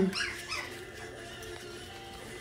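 Five-week-old mini goldendoodle puppies giving a few faint, high yips near the start, then quiet.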